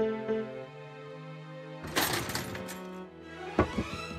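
Slow music with held chords, as on the grand piano the cartoon bear is playing. About two seconds in, a loud, noisy crash-like burst cuts across it, and a few sharp knocks follow near the end.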